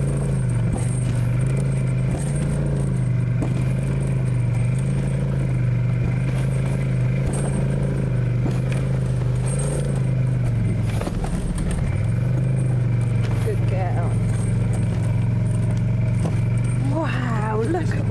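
Snowmobile engine running at a steady speed, a continuous low drone with a brief dip about eleven seconds in. Voices come in near the end.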